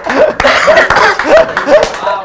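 Men laughing loudly in a run of short, repeated laughs.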